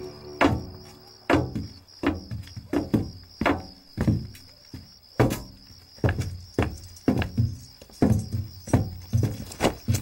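Heavy boot footsteps, about two a second and a little uneven, over a steady, held background music tone.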